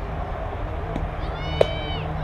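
A pitched softball smacking into the catcher's mitt once, a sharp pop about a second and a half in, as a high-pitched voice calls out over background chatter.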